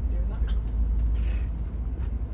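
Steady low rumble of a bus's engine and road noise, heard from inside the moving bus.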